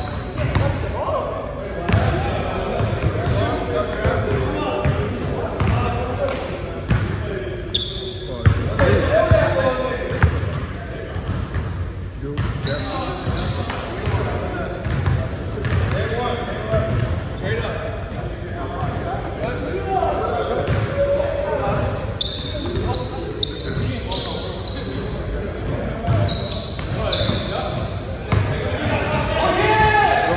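A basketball bouncing on a hardwood gym floor, with players' voices echoing in a large gym.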